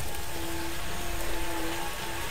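Bobcat T180 compact track loader's diesel engine running steadily as it pushes soil, heard as a low rumble and a steady hum under a broad hiss.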